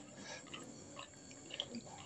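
Faint, irregular wet squishing and soft clicks of fingers mashing soaked biscuits into water in a plastic bowl.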